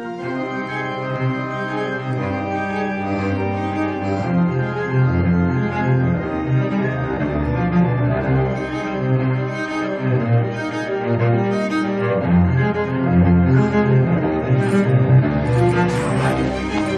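Orchestral score music: low bowed strings, cello and double bass, play a repeating figure that grows steadily louder.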